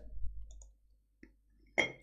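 A pause in a man's speech, filled with faint sounds: a low tail fading out in the first half-second, one small click about halfway through, and a short sharp click just before he speaks again.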